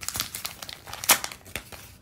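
Paper envelope being opened by hand, the paper crinkling and tearing in uneven snatches, the loudest rip about a second in.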